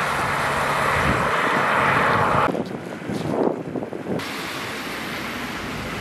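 A car passing on a road, a steady rush of tyre and engine noise that cuts off abruptly about two and a half seconds in. A quieter, steady background follows.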